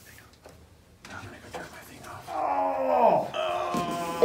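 A man's long, drawn-out groan that slides down in pitch, loud from about two seconds in, as he gets up stiffly from his chair. Faint clicks and rustling come before it.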